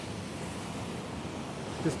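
Ocean surf washing and breaking on a rocky shore: a steady rushing wash.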